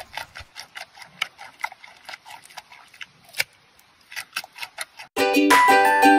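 A giant panda crunching a raw carrot: a string of irregular, crisp crunches, several a second. About five seconds in, bright ukulele music starts suddenly.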